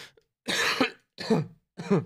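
A man coughing: a run of short coughs, three of them about half a second apart.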